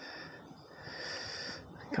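Faint breathing close to the microphone: two soft, hissy breaths.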